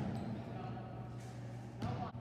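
A volleyball struck by a setter's hands right at the start, then a ball hitting the hardwood court floor near the end, over a steady low hum.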